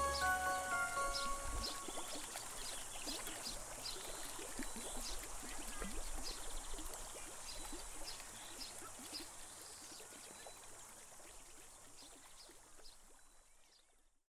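The last notes of background music ring out and die away, leaving water trickling and bubbling in a stream, which fades out slowly to silence.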